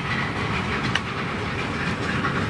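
Steady background noise, an even rushing hiss, with a faint tick about a second in.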